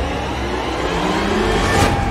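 Motorcycle engines revving at speed in a film chase sound mix, the pitch rising, with a brief rush of noise near the end.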